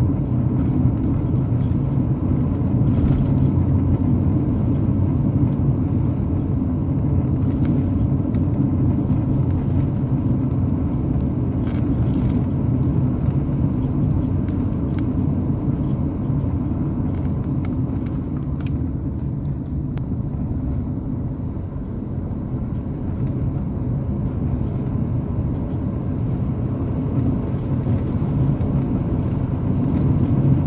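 Car driving along a road, heard from inside the cabin: a steady low drone of engine and tyre noise that eases slightly about two-thirds of the way through.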